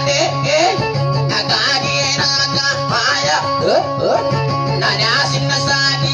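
Guitar played in quick plucked note runs as dayunday accompaniment, the Maranao sung-verse entertainment.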